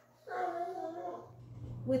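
Bloodhound giving one drawn-out whine, about a second long, that falls slightly in pitch at the end.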